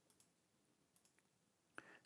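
Near silence with a few faint computer-mouse clicks, the clearest one near the end.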